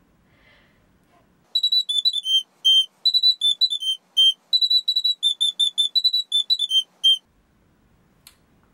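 Plastic soprano recorder blown through the nostril, playing a short tune in very high-pitched, whistle-like notes. The notes start about a second and a half in: quick, separate notes in phrases that step down in pitch and repeat, stopping near the end.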